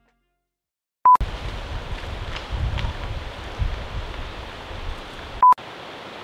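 Two short electronic beeps of one steady tone, about four seconds apart. Between them is outdoor noise with gusty low rumbling of wind on the microphone.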